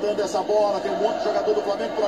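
A man's voice talking without a break: Portuguese TV football commentary from the match broadcast.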